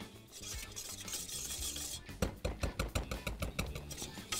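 Wire whisk stirring flour toasting in butter in a small stainless-steel saucepan, the first stage of a béchamel roux. A steady scraping hiss for about two seconds, then rapid clicks as the whisk strikes the side of the pan.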